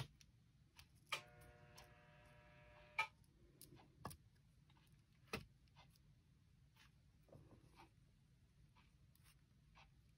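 Faint clicks and taps of small fused-glass pieces being set down and nudged into place on a kiln shelf, with a few sharper clicks, and a steady pitched tone held for about two seconds, starting about a second in.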